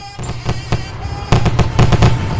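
Fireworks going off in a rapid series of bangs and crackles, getting louder about a second in.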